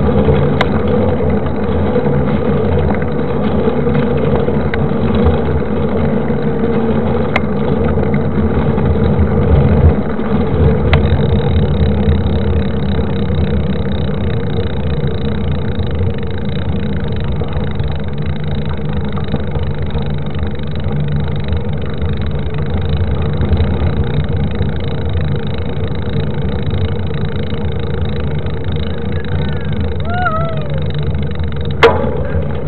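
Knobby 29-inch mountain-bike tyre rolling fast on asphalt, a steady drone under heavy wind rumble on a microphone mounted by the front wheel.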